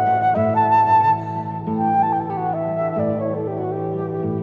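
Transverse flute playing an instrumental melody that climbs briefly, then steps downward in held notes, over a sustained lower accompaniment.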